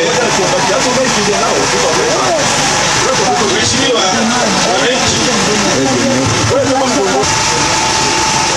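A man speaking into a microphone, continuous speech over a steady background noise.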